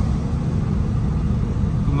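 Steady low rumble of a lorry's engine and road noise from tyres on a wet motorway, heard from inside the cab.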